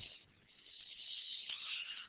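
A faint hiss in a pause between words, starting about half a second in, with no speech or clear pitch.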